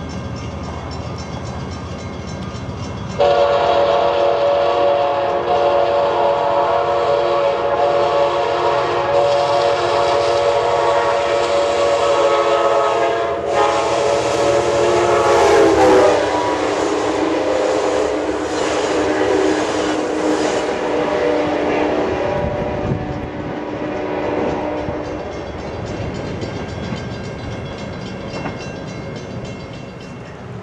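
Amtrak passenger train approaching with a rumble. About three seconds in, the locomotive's horn starts one long, loud blast that drops in pitch as the locomotive passes near the middle, then fades as the train rolls on by.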